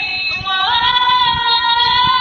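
A woman singing a cappella: about half a second in, her voice slides up into a long, high held note.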